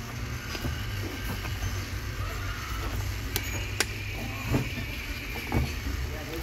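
Shop background: a steady low hum with faint music, and two sharp clicks a little past the middle.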